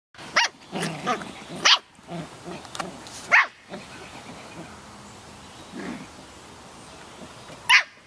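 Samoyed puppies barking during rough play: four short, sharp, high barks, the last near the end, with softer sounds between.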